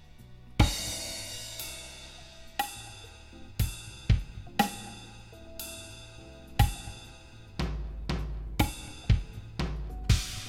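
Drum kit playing a gospel drum chop very slowly, about one stroke a second, with cymbal and hi-hat hits ringing out between strokes and a few quicker pairs of strokes.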